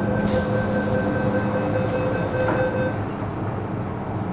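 MTR M-Train door-closing sequence: a steady warning tone sounds while the doors slide shut. The doors meet with a knock about two and a half seconds in, and the tone stops just after.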